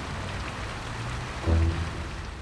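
Fountain water splashing and pouring steadily into its basin, under background music with a loud low note about one and a half seconds in.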